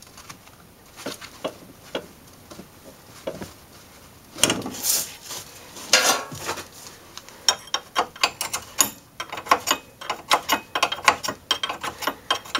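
Hand ratchet clicking rapidly as the 18 mm lower ball joint nut is run off, starting a little past halfway. A couple of louder handling noises come before it, near the middle.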